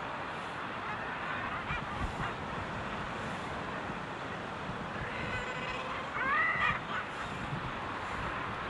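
Common guillemot colony on a packed breeding ledge: a steady din of calling birds, with a louder call that arches up and down in pitch about six seconds in.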